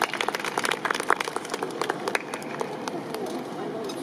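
Scattered audience clapping, most dense in the first half and thinning out, with voices from the crowd.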